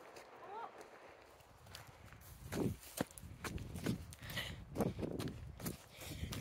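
Footsteps on dry dirt and gravel, starting about two and a half seconds in, a step every half second to a second.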